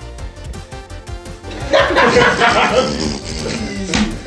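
Background music, then about a second and a half in, a loud outburst of several men shouting and laughing together over a card game, which lasts to near the end.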